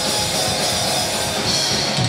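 Live rock band playing an instrumental passage: electric guitars through Marshall amplifiers and a drum kit, with no vocals.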